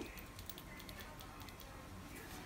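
A few faint, short clicks, scattered and irregular, over quiet room tone, with a small knock at the very start.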